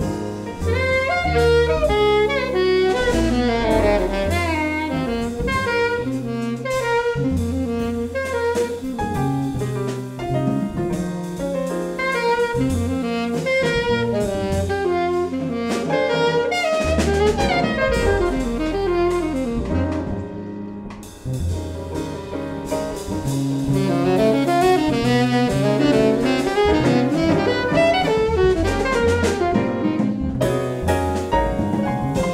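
Live small-group jazz: an alto saxophone solos over a rhythm section of piano, double bass and drum kit. The playing eases briefly about two-thirds of the way through, then builds again.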